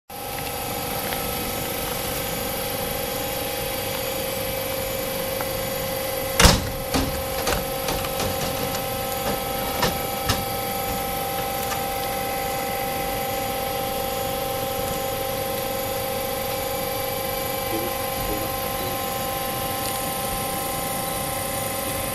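Choshi Electric Railway DeHa 801 electric railcar standing with its electrical equipment humming steadily on several held tones. There is a loud clack about six seconds in, then a run of lighter clicks over the next four seconds.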